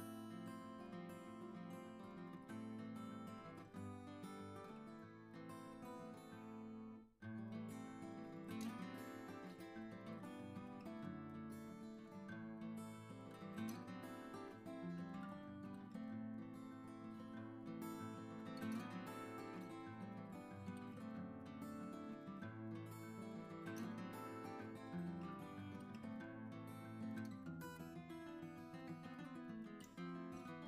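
Background music played on acoustic guitar, plucked and strummed, with a brief break about seven seconds in.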